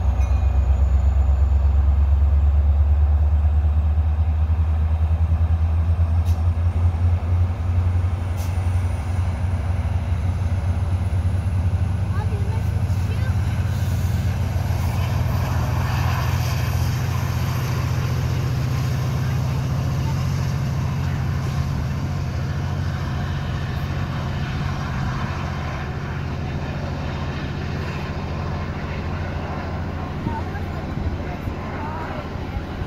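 Diesel locomotive hauling a Metra commuter train past. Its deep engine drone is loudest at first and eases as it draws away, leaving the steady rumble and clatter of bilevel gallery cars rolling by on the rails.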